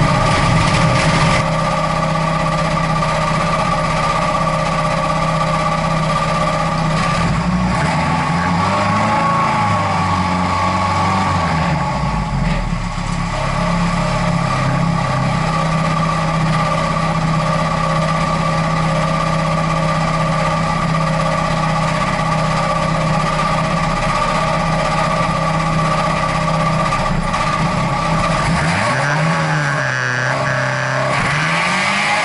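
Folkrace car engine running at idle, heard from inside the stripped cabin, with brief rises in revs about nine seconds in and again near the end.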